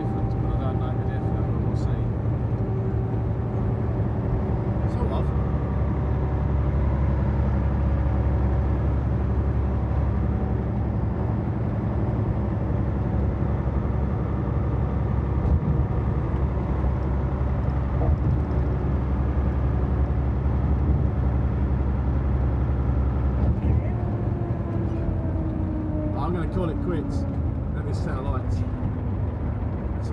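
Truck engine droning steadily with road noise, heard inside the cab at highway speed. From about three-quarters of the way through, the engine note falls and eases off as the truck slows.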